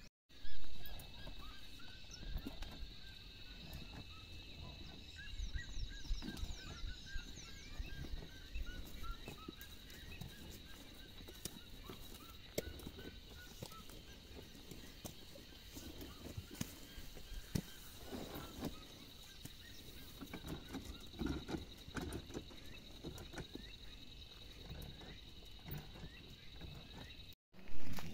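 Farmyard background: a steady high buzz under scattered calls of farm fowl, with short repeated chirps in the first half and occasional clicks and knocks. A brief loud sound comes about half a second in.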